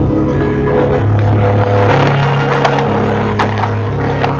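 Background drama score of low sustained notes that shift pitch every second or so. Over it come scattered scrapes and crunches of someone scrambling over stony ground, more of them in the second half.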